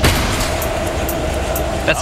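Large metal roll-up door rattling as it rises, starting abruptly and running steadily.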